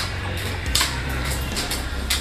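A hoe striking and scraping into loose garden soil, two strokes about three-quarters of a second apart, over a steady low rumble.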